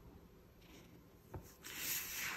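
A hand rubbing and sliding over a sheet of paper laid on a journal page. A faint tap comes about halfway through, and a soft, papery swish starts about one and a half seconds in.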